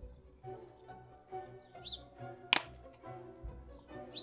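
Soft background music, with a single sharp snip about two and a half seconds in as cutters clip through a DJI Mini 2's plastic propeller blade, cutting it down to a quarter of its length.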